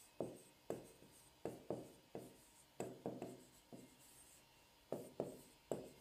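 Pen tip tapping and sliding on an interactive touchscreen display while words are handwritten: about a dozen faint, irregular taps.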